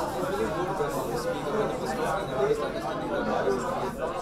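Many people talking at once in small groups: a steady babble of overlapping conversations filling a room.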